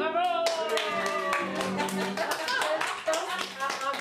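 People's voices over rapid, sharp hand clapping, which takes over just as a guitar song ends.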